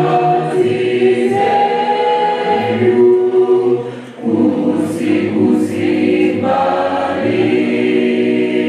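A small group of young singers singing a gospel hymn together into microphones, with no instruments heard, pausing briefly about four seconds in.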